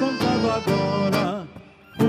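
Live gaúcho folk dance music: strummed acoustic guitars under an accordion melody. The music breaks off briefly near the end, then the band comes back in.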